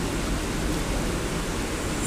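Steady, even hiss of background noise, with no tone or rhythm.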